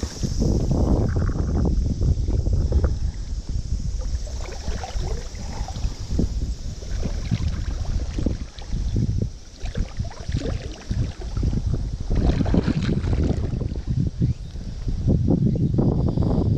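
Wind and river water buffeting an outdoor camera microphone: a gusty low rumble that swells and drops every second or two.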